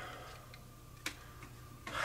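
Quiet room with soft rustling of a crumpled parchment-paper note being handled and lowered, and a single sharp click about a second in. A breath comes in near the end.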